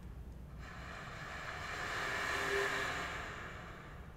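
Alto saxophone played as a breathy air tone: mostly rushing air with only a faint pitch, swelling from nothing to a peak and fading away over about three seconds.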